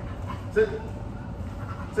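A young German Shorthaired Pointer whimpering briefly.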